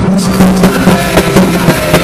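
Live rock band playing loud on stage, with drums and a steady low held note underneath, the audience recording close to full scale and sounding overloaded.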